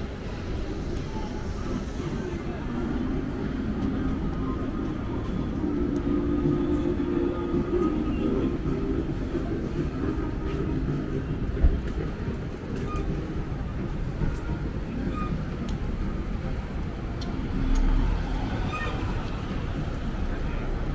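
City street ambience with motor traffic passing on a wet road: a steady low rumble and tyre noise. There is one sharp knock a little past halfway, and a louder low rumble swells near the end.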